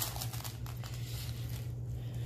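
Plastic meat packaging crinkling and soft handling noises as raw ground beef is pulled from its tray, with a few light clicks in the first second, over a steady low hum.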